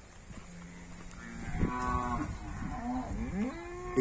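Cattle mooing in a pen: several calls overlapping, one low and held, others higher and rising in pitch, growing louder toward the end.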